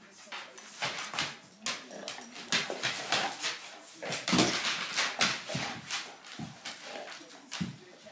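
Two dogs, a bloodhound and a brindle bulldog-Rottweiler cross, play-fighting: busy scuffling with dog whines and grumbles, and several dull thuds in the second half.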